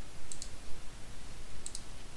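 Computer mouse button clicks: two quick double clicks, about a second and a half apart.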